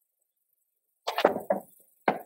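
Black hard plastic transport case being handled and set down, a short knocking clatter about a second in and another brief knock at the end.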